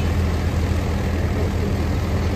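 A tractor running a wheat-harvesting machine, a steady low engine drone.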